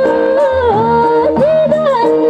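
A woman singing a Nepali dohori folk song through a microphone, holding long notes and sliding between them with quick ornamental turns, over a steady instrumental accompaniment.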